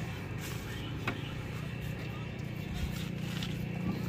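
A steady low vehicle hum with a few faint clicks.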